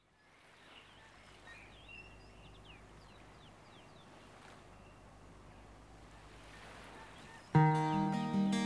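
Faint outdoor ambience with a few short bird chirps in the first few seconds. Near the end an acoustic guitar comes in suddenly and loudly with a ringing chord.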